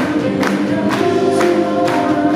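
Live rock band playing: a man singing at the microphone with backing voices, over electric guitar and a steady drum beat of about two hits a second.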